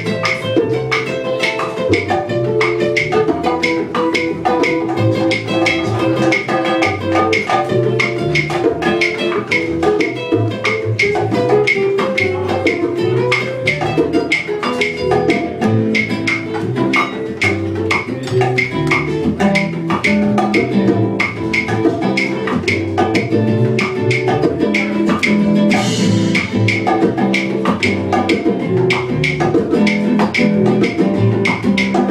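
Live band playing instrumental Latin-flavoured jazz: guitar, upright bass and drums. Quick, steady percussion strokes run over a moving bass line.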